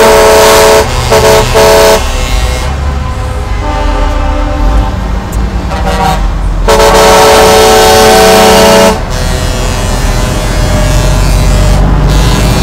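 Truck air horns sounding a multi-note chord in repeated blasts, the longest about two seconds, over the low running of diesel truck engines. The horns stop about nine seconds in, leaving the engines.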